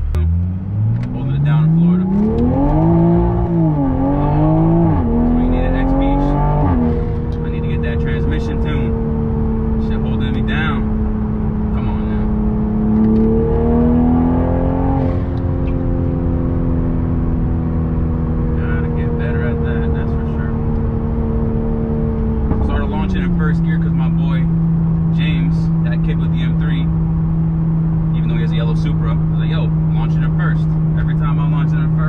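Modified Mk5 Toyota Supra engine, fitted with an aftermarket downpipe, intake and charge pipe, accelerating hard, heard from inside the cabin. The revs climb, dip briefly and climb again, then drop at an upshift about seven seconds in. They rise again around 13 to 15 seconds, hold, and drop once more at about 23 seconds to a lower steady drone.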